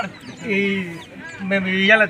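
A man's voice calling out a protest slogan in two long, drawn-out phrases, each held for about half a second.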